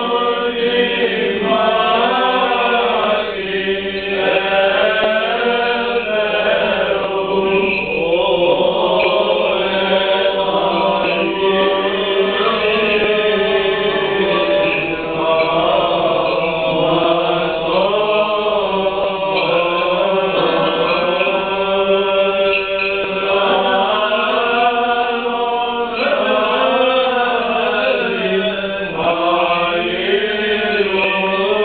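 Byzantine chant sung by several voices at the Small Entrance of the Orthodox Divine Liturgy. A melody moves over a steadily held drone (the ison).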